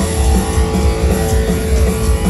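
Heavy metal band playing live with electric guitar, bass guitar and drums, and no vocals. A long note is held across most of the passage over the pounding low end.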